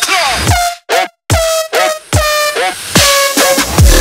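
Instrumental heavy dubstep: brassy, horn-like synth stabs over falling bass sweeps. The music cuts out completely for a moment about a second in, then heavy bass hits come in near the end.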